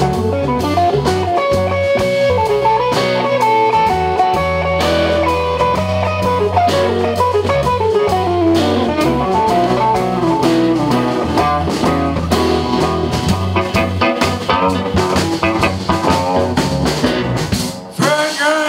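Live band playing an instrumental jam: electric guitar lead lines over bass guitar and drums. The sound drops away abruptly just before the end.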